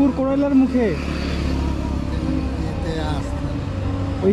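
Brief bits of a man's speech over the steady low hum of a motorcycle engine idling, with a low rumble that swells in the middle.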